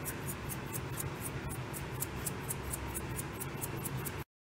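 A pot of milky broth simmering on the stove: a steady low hiss with light, even ticking of small bubbles popping, about five a second.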